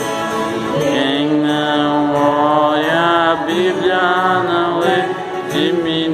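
Children and a man on a microphone singing a Portuguese children's worship song, drawing out long held notes with slides between pitches.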